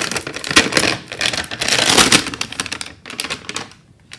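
Printed plastic wrapper being peeled and torn off a LOL Surprise Hairgoals toy package: a dense run of crackling and crinkling that dies away near the end.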